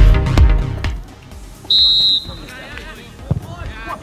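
Electronic dance music cuts off about a second in. About half a second later a referee's whistle sounds once, a short high blast, followed by players shouting on the pitch.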